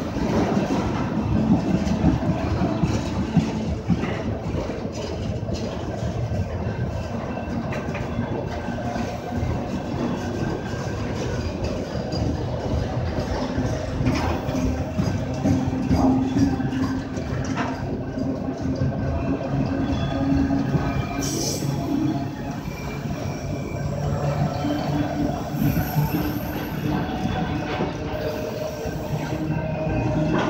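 Autorack cars of a slow-moving freight train rolling past close by. There is a continuous steel-wheel rumble on the rails, with repeated clicking and clattering of wheels over rail joints and faint steady whining tones.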